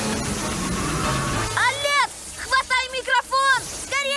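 Cartoon soundtrack: background action music, then from about a second and a half in a run of short, squeaky character vocal sounds that rise and fall in pitch.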